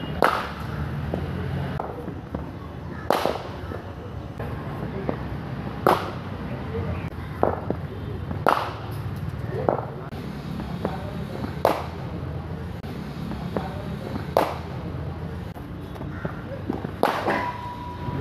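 Sharp cracks of a leather cricket ball struck by a bat, about seven of them roughly every two to three seconds, with a few fainter knocks between, over a steady low hum.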